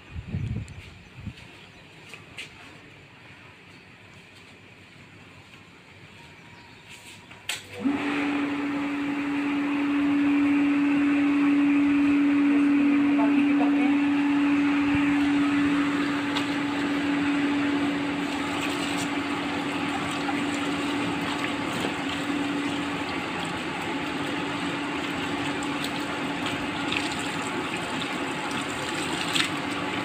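Water running hard from a wall tap through a rubber hose onto wet clothes, starting suddenly about eight seconds in as a steady rush with a steady hum in it.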